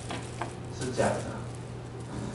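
Room noise: a steady low hum under a faint hiss, with a few small clicks and a brief faint murmur of a voice about a second in.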